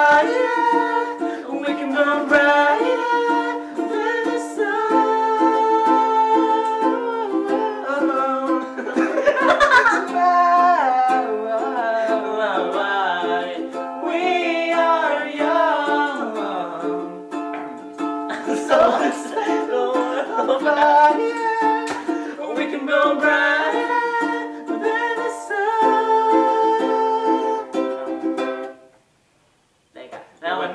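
Ukulele strummed in chords with several voices singing along, cutting off suddenly near the end.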